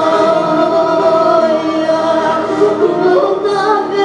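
A woman singing into a microphone over a PA, backed by a live band of keyboard and bağlama, with long held notes.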